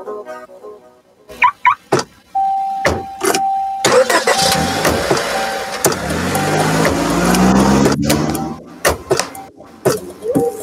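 Car sound effects: a few clicks, a warning chime beeping on and off, then an engine starting and revving up with a rising pitch. The engine cuts off suddenly about eight seconds in and a few more clicks follow.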